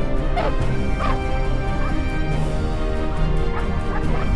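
A dog barking repeatedly, two strong barks in the first second or so and fainter ones near the end, over background music with held notes.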